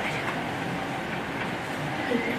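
Steady background noise of a room during a pause in talk: an even hiss with no distinct events.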